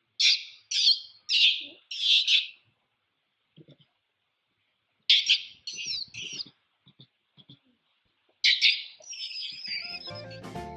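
Infant long-tailed macaque screaming in distress as its mother grips it: four high-pitched cries in quick succession, three more about five seconds in, and a last cry near the end that trails off into a wavering whine.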